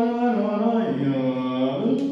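A man singing a slow wordless melody in long held notes, stepping down to a low note about a second in and climbing back up near the end, sung to show how the passage should go.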